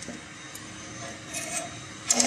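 Synthetic webbing strap and its steel ratchet buckle being handled, with a brief rubbing rustle about one and a half seconds in, over a low steady background hum.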